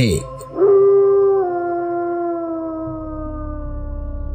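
Wolf howl sound effect: one long howl that starts about half a second in, holds its pitch, drops a step and then slowly slides lower as it fades. A low rumbling drone builds beneath it near the end.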